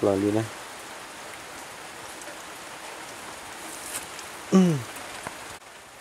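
A steady, even hiss, with a brief word spoken about four and a half seconds in; the hiss drops away abruptly near the end.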